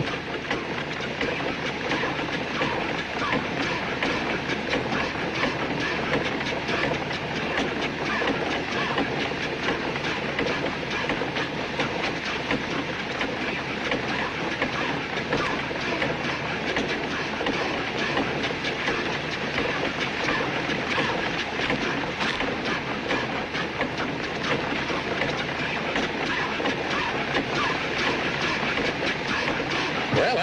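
A contraption-style gold detector machine running: a steady, rapid mechanical clattering that holds at an even level throughout, like train wheels on rails.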